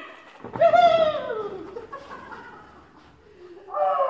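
Small dog whining: long, high cries that fall in pitch, one about half a second in and another near the end.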